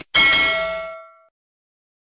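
A single bell-ding sound effect for the notification bell: one sudden strike that rings out with several clear tones and fades away within about a second.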